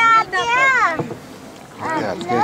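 A high-pitched voice calling out with a rising and falling pitch for about a second, then a short lull of faint open-air noise on the water before voices start again near the end.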